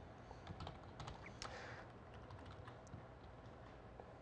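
Faint, scattered keystrokes on a computer keyboard as a short line of code is typed.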